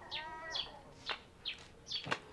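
Small birds chirping faintly: short, quick high chirps falling in pitch, about one every half second, with a brief pitched call near the start.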